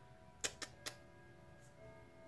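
Three quick sharp clicks of makeup palettes being handled and knocked together, between about half a second and one second in, over faint sustained tones.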